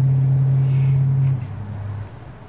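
A loud, steady low hum, as from a small motor or machine, that cuts off about one and a half seconds in and leaves a fainter hum behind.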